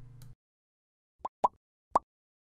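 A low hum cuts off just after the start. About a second later come three short pops, a quarter to half a second apart, the sound effects of an animated subscribe-button end screen.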